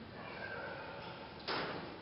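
Handling noise as a sign is lifted off a wooden table: one brief knock and scrape about one and a half seconds in, over faint room noise.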